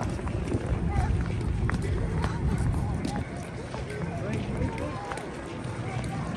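Footsteps on paving stones, with faint voices of people around and a constant low rumble.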